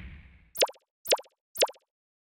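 Three short pop sound effects about half a second apart, each a quick pitched plop, added as on-screen text pops up one line after another.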